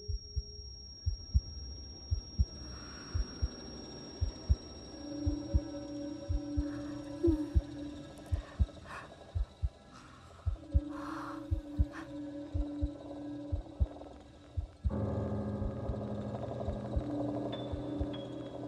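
Slow, steady heartbeat beating in low thumps, about two a second, under a low droning film score. About fifteen seconds in, the drone suddenly swells louder.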